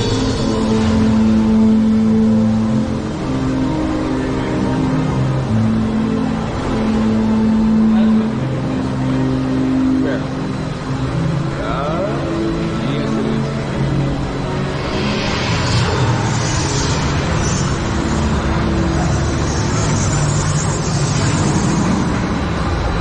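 Theme-park ride soundtrack music with long held notes that change step by step. About fifteen seconds in, a loud rushing noise comes in under it.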